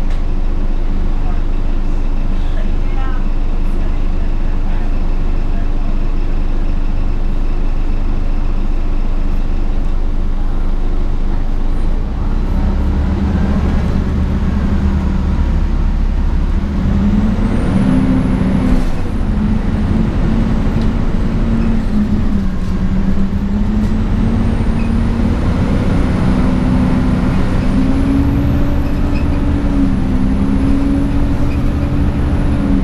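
Inside a 2004 Gillig Advantage transit bus: the engine idles steadily while the bus stands, then about twelve seconds in it revs up as the bus pulls away, its pitch climbing and stepping through gear changes, with a faint high whine above.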